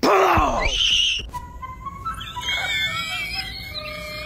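A girl screaming in fright at being jumped out on: a sudden loud scream that falls in pitch, then a higher shriek about a second in. Quieter steady tones follow.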